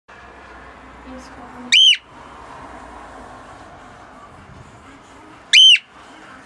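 Cockatiel whistling: two loud, short calls, each rising and then falling in pitch, about four seconds apart.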